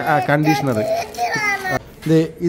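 People talking, with a child's high-pitched voice among them.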